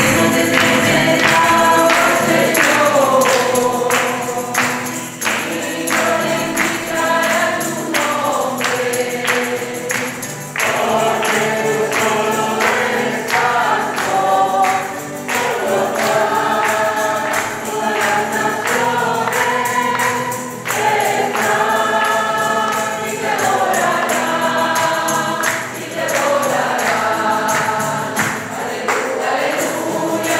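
Congregation singing a lively hymn together, with hands clapping in rhythm.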